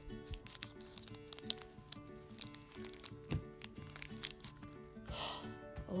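Soft background music with scattered sharp clicks and crinkles of scissors snipping open a small plastic blind bag, and a short crinkle of plastic about five seconds in.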